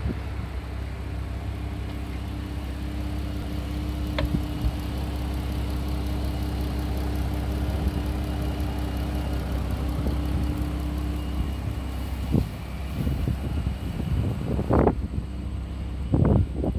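Chrysler 3.6-litre Pentastar V6 idling steadily under an open hood. A couple of short knocks come in the last few seconds.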